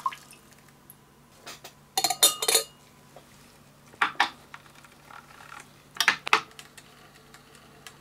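Short clinks and clicks from handling glass lab ware and the controls of a hot plate stirrer, in three brief clusters about two seconds apart, over a faint steady hum.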